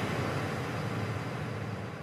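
A small audience applauding.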